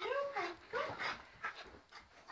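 Small fluffy dog making a quick run of about five short, pitch-sliding yips and whines in play.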